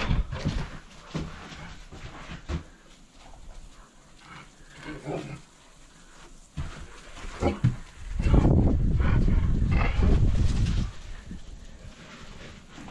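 Two dogs close by, making small animal noises as they move about. About eight seconds in comes a louder noisy stretch of roughly three seconds.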